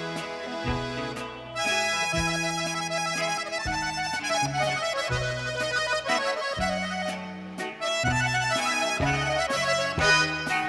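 Button accordion playing the lead melody in an instrumental break, over a bass line and the rest of the band.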